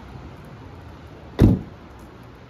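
A car door shut once: a single heavy thump about one and a half seconds in.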